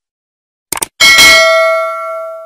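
A quick double mouse-click sound, then about a second in a notification-bell sound effect rings out with several clear tones and fades away.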